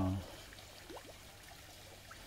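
Faint, steady trickle of circulating water in a garden koi pond.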